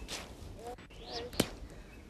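A weighted fishing line thrown up into a tree, swishing through the air with a short rising whoosh, then a single sharp click about one and a half seconds in.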